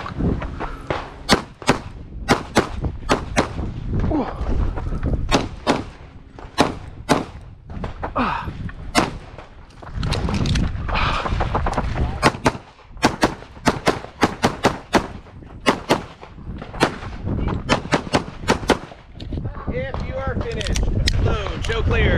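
Dozens of pistol shots from a competition handgun, fired in fast pairs and strings, with a short break of a second or two partway through. The shooting stops a few seconds before the end.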